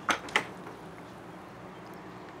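A lemon wedge squeezed by hand over fried fish: two short, sharp squirts about a quarter-second apart right at the start, then only a faint steady low hum.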